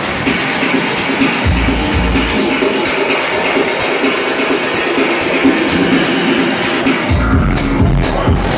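Electronic dance music from a DJ set played loud over a club sound system. The bass is mostly dropped out, with a brief bass hit about a second and a half in, and the full low end comes back about a second before the end.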